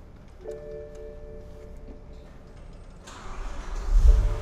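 A short electronic chime of steady tones about half a second in as the BMW E61 M5's ignition comes on. From about three seconds the engine is cranked and its V10 fires near the end, settling into a low idle.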